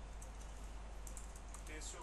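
Typing on a computer keyboard: a quick run of key clicks over a steady low hum.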